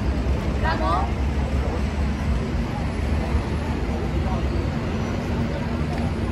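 Steady low rumble of city traffic, with a brief voice about a second in.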